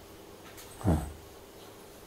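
A single short, low voiced "uh" from a man about a second in, fading out, in a pause between sentences over a faint steady room hum.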